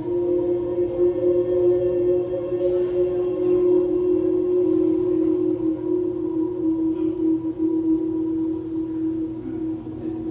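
Ambient drone music from a small hand-held wind instrument processed through effects pedals: sustained, overlapping held tones, with a new note entering at the start and a lower note joining near the end.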